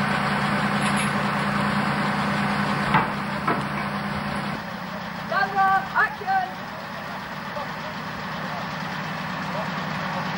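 Heavy engine of a mobile crane running steadily at idle, with two sharp knocks about three seconds in. The engine sound drops abruptly to a quieter level just before halfway, and a few short voice-like calls come around the middle.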